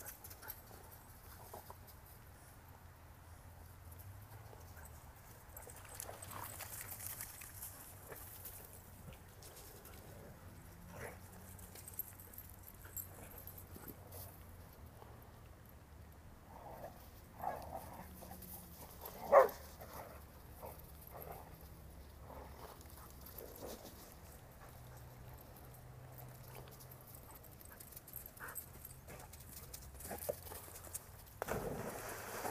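A dog making faint, scattered sounds over a steady low hum, with one short, much louder dog sound about two-thirds of the way through.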